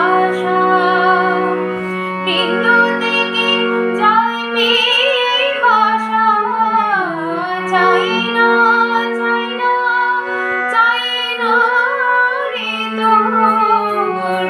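A woman singing a Bengali song, her melody wavering and ornamented with slides, over long held accompaniment notes that change pitch step by step.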